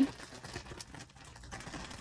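Faint crinkling and soft clicking of plastic packaging being handled: a sturdy glued packet holding small bags of diamond-painting drills.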